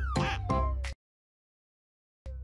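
Upbeat children's background music with a long falling glide over its last few beats, then it cuts off abruptly about halfway through into dead silence.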